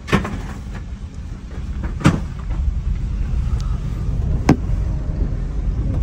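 A car driving on a rough, unpaved road, heard from inside the cabin as a steady low rumble of engine and tyres. Three sharp knocks come through, about two seconds apart.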